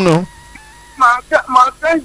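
A person's voice: a drawn-out syllable falling in pitch at the start, a short pause, then quick spoken syllables.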